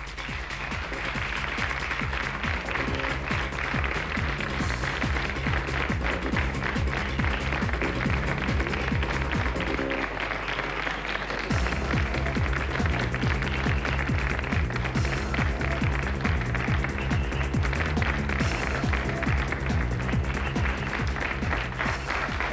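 Studio audience applauding over the show's entrance music, a steady repeating theme; about halfway through the music's bass drops out for a moment and comes back heavier.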